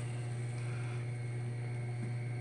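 Steady low electrical hum with a light hiss underneath, unchanging throughout.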